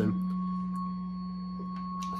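Electric guitar note held on by a Sustainiac sustainer pickup: one steady, pure tone that keeps ringing without being picked again, with a faint higher overtone, slowly fading a little.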